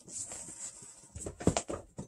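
Vinyl record sleeves and cardboard being handled as LPs are taken out of a shipping box: rustling with a few short knocks and slaps, the loudest about one and a half seconds in.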